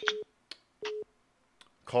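Two short, single-pitched telephone-line beeps, a little under a second apart, each beginning with a click: the phone system's tone as one caller drops off and the next is put through.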